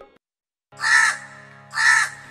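A crow cawing twice, about a second apart, over a faint held musical drone as a song begins.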